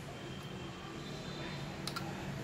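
Light clicks from handling a microscope's plastic condenser holder, one about half a second in and a quick double click near the end, over a steady low hum.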